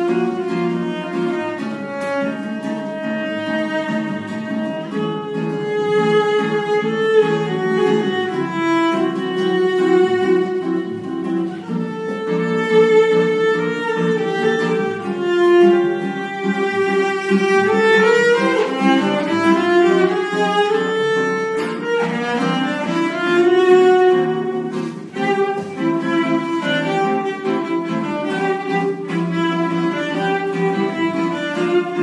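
Cello bowed in a melodic line over a nylon-string classical guitar accompaniment, a duet of sustained bowed notes above plucked chords, with a rising run on the cello about eighteen seconds in.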